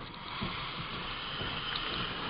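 Steady hiss of background noise picked up by a computer microphone, even and unchanging, with no voice.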